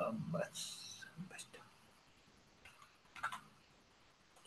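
A person's voice, low and brief, in the first second, followed by a soft hiss, then a few faint clicks, the sharpest about three seconds in.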